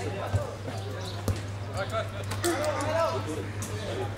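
Two sharp thuds of a football being struck, about a second apart, followed by men's voices calling out across the pitch, over a steady low hum.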